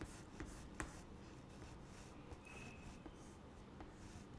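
Faint scratching of chalk on a chalkboard in short, repeated shading strokes. The strokes are strongest in the first second, with a sharper tap near the end of it, then grow fainter and sparser.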